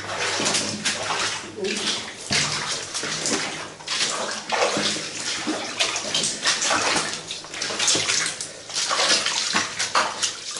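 Footsteps splashing through shallow water on a tunnel floor, an irregular slosh about twice a second.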